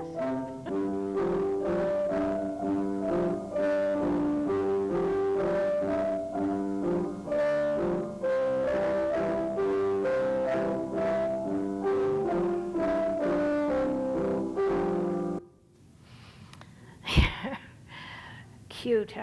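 Two children playing a piano duet on a grand piano, from an old home video, with several notes sounding at once in a steady flowing melody. The playing cuts off suddenly about three seconds before the end, and a single sharp knock follows near the end.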